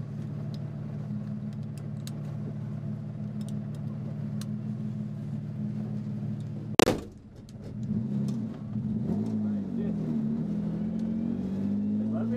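VAZ drift car's engine idling steadily, heard from inside the caged cabin. About seven seconds in, a single loud bang, the door slamming shut, after which the engine pitch rises and falls unevenly as the throttle is worked and the car moves off.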